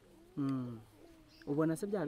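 A man's voice: a short hum with falling pitch, then he starts speaking again near the end.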